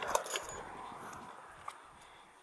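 A few light clicks and rustles from footsteps and the rod and spinning reel as a caught fish is brought up onto the bank, fading toward the end.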